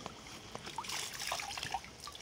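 Light splashing and trickling of water as a pond dipping net is swept through shallow water and drawn out, water running through the mesh in small drips.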